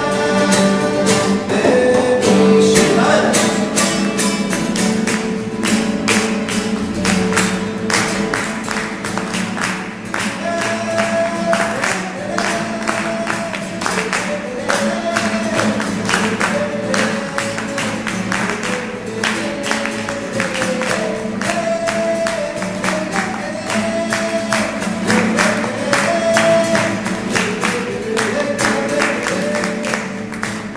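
Solo acoustic guitar, a nylon-string classical guitar with a cutaway, played live: a fast, steady strummed rhythm with a melody line running over it.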